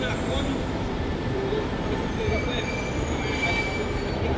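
Steady city traffic rumble with faint voices. About halfway through, a high, drawn-out squeal lasts about a second and a half.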